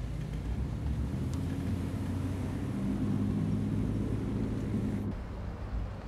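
Steady low drone of a car's engine and road noise heard from inside the moving car's cabin, cutting off abruptly about five seconds in.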